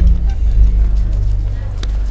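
A sudden deep bass rumble, a dramatic low boom in the film soundtrack, that hits at once, swells about half a second in and then holds as a low drone.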